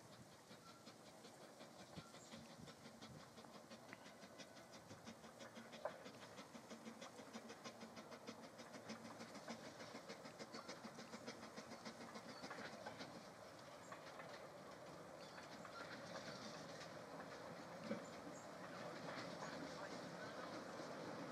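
Faint steam exhaust beats from a small narrow-gauge steam tank locomotive as it moves off with a coach, a quick even chuffing. One or two sharper knocks come through, and the sound of the train grows a little louder toward the end.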